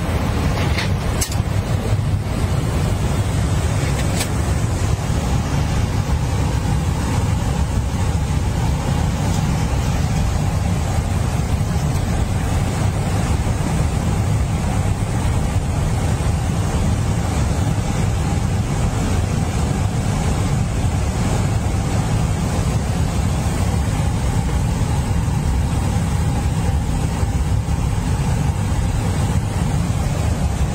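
Steady cockpit noise of a jet airliner in cruise: a constant low rumble and rush of air past the windscreen, with a few faint ticks in the first few seconds.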